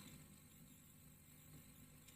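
Near silence: a pause in the speech with only faint background hiss and low hum.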